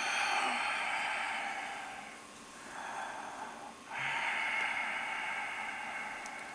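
A person breathing audibly in long, noisy breaths, about three of them, with short pauses between.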